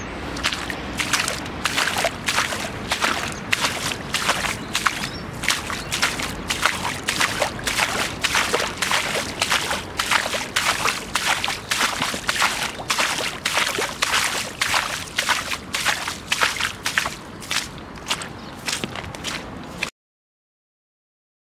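Footsteps of rubber wellington boots walking through long wet grass and soggy ground, at a steady pace of about two strides a second, with the swish of grass against the boots and legs. The sound cuts off suddenly at the end.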